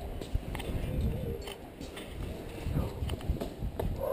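Irregular light knocks and scuffs of a climber's hands and shoes against a granite boulder as he mantles over the top, over a low rumble of movement near the microphone.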